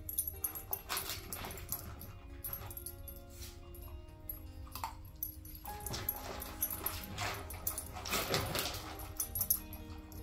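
A young husky, German shepherd and golden retriever mix puppy making small sounds while nosing and mouthing a plastic disc toy on a laminate floor, with several short noisy bursts, the longest near the end. Background music with long held notes plays underneath.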